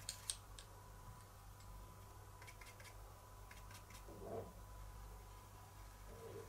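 Near silence over a steady faint hum, with two light clicks right at the start and scattered faint ticks a few seconds in, from stencil brushes and an ink pad being handled on the craft mat.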